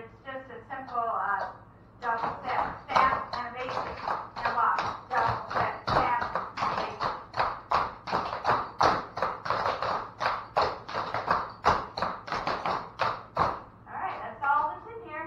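Several cloggers' tap shoes striking a wooden floor in a fast, steady rhythm of sharp clicks, about three to four a second. The stepping starts about two seconds in and stops just before the end.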